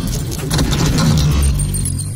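Intro sound effects: a dense rattle of metallic clinks over a deep rumble. The clinks thin out about halfway through while the rumble grows stronger.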